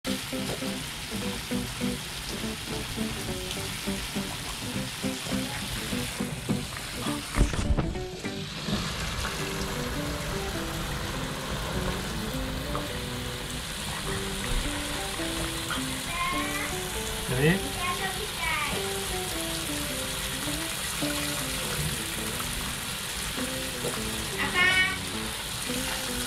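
Water from a garden hose spraying and splashing onto the ground and into a pond, a steady hiss, under light background music. A loud low bump comes about seven and a half seconds in, and a short voice is heard around the middle.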